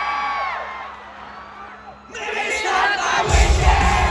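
Arena concert crowd shouting and cheering: a long held shout fades in the first second, then the cheering swells again about two seconds in. Near the end the full rock band comes back in loudly with heavy drums and bass.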